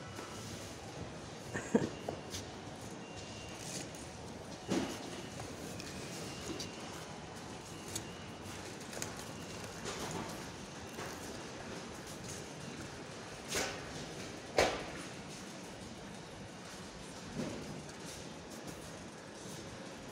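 Steady supermarket background noise with a few scattered knocks and rattles from a shopping trolley being pushed, the sharpest knock about three-quarters of the way through.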